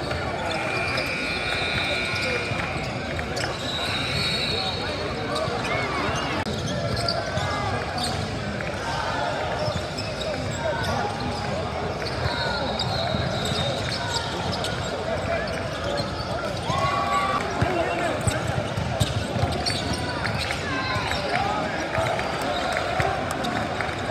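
Basketball being dribbled and bouncing on a hardwood gym floor during play, with sneakers squeaking and a steady babble of players' and spectators' voices.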